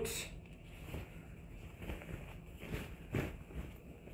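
Faint rustling of a quilted fabric bag being handled and turned, its handles pulled out and its lining worked into place, with a soft bump about three seconds in.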